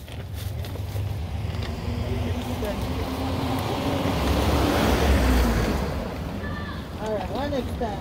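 Wind buffeting the microphone, a rumbling rush that swells to its loudest about five seconds in and then eases off, with voices coming in near the end.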